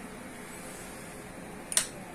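A single sharp click near the end, a power switch being pressed during shutdown of the confocal microscope system, over a steady background hum of the room's equipment.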